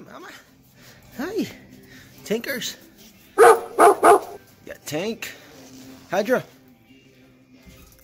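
Small dog barking in short yaps about once a second, with a louder quick run of three barks near the middle.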